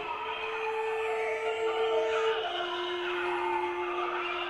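Solo cello sustaining a long high note that steps down to a lower held note about two and a half seconds in, over a dense layer of other pitched sound.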